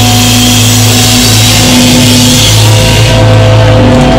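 A rock band's sustained chord ringing out on guitars and bass, with a wash of cymbals that dies away about three seconds in while the drums stay silent.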